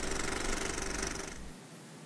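A steady low hum fades away and drops to near silence about one and a half seconds in.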